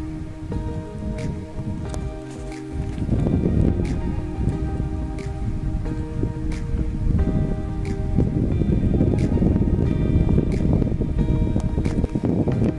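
Background music: held, sustained chords that change a few times, with a soft tick about every second and a quarter.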